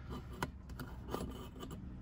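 Faint clicks and scraping of a steel coil spring against the plastic hinge bracket of a GM truck console lid as it is pushed up through its hole by hand. The clearest click comes about half a second in.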